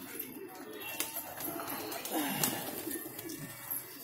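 A flock of domestic pigeons cooing, with soft rising and falling coos and a few light clicks.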